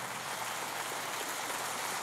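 A congregation applauding: steady clapping from many hands.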